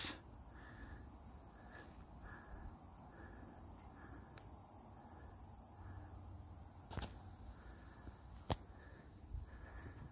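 Insects trilling steadily outdoors in one continuous high-pitched chorus, with a fainter chirp repeating under it about once or twice a second. Two sharp clicks come about seven and eight and a half seconds in.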